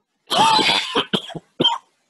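A man coughing: one long, rasping cough followed by two short ones.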